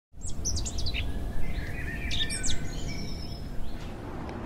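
Birds chirping and singing, a quick run of falling chirps in the first second and then several held and sliding whistled notes, over a steady low rumble.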